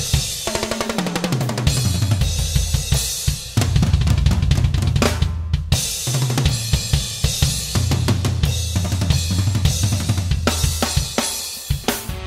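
A large rock drum kit played hard along with a band, with bass guitar notes stepping underneath: crash cymbal accents syncopated against bass drum beats across the barline, between snare hits. The cymbals and upper drums drop out briefly a little past the middle, then the playing returns.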